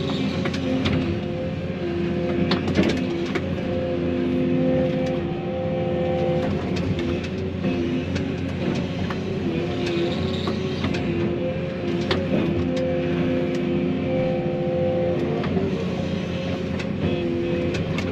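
Excavator's diesel engine and hydraulics, heard from inside the cab, running steadily, with the hydraulic tone switching on and off every few seconds as the boom and thumb move. Sharp snaps and cracks of branches come through as brush is grabbed and stacked.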